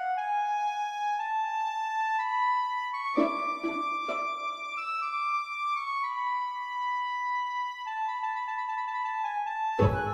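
Slow orchestral adagio: a single sustained melody line climbs step by step, then falls back. Three short, low accents come about three to four seconds in, and a fuller, louder entry sounds just before the end.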